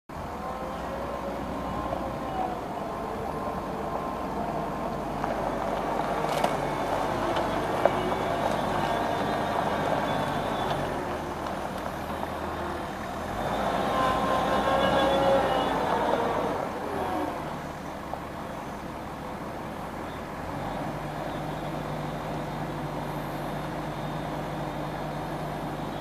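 Komatsu WA80 compact wheel loader's diesel engine running as the machine drives across the yard, with its pitch rising and falling, loudest about halfway through as it passes close. Two sharp knocks come around six and eight seconds in. In the last several seconds the engine settles to a steadier note while the bucket is raised.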